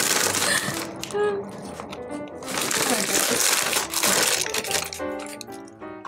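Crinkling and crunching of a potato-chip bag and chips in two long stretches, over background music.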